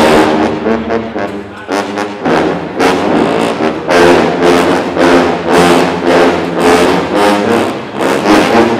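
A large ensemble of sousaphones playing together: loud, full brass notes in short rhythmic phrases with a few longer held chords.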